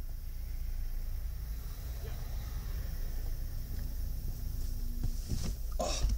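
Low, steady rumble of a Mazda 323 running, heard from inside the cabin, with a few brief knocks near the end.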